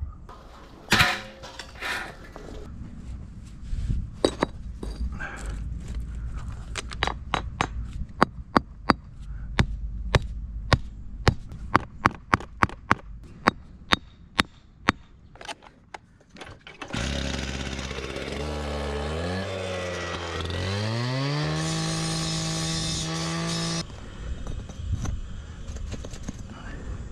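A hammer taps concrete retaining-wall blocks again and again as the first course of a fire pit is set level. Near the end a small gasoline engine starts, winds up in pitch, holds at a high steady speed for a few seconds, then cuts off suddenly.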